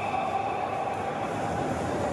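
Ice-rink goal horn sounding one long steady note over hall noise, fading near the end.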